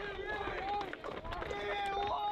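Indistinct voices, with no clear words, over outdoor background noise; the sound is dull, with little treble.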